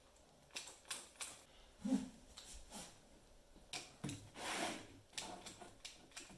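Mini hot glue gun in use: scattered clicks and taps of its trigger and of handling as glue beads are laid along foam strips, with a short rustle about four and a half seconds in.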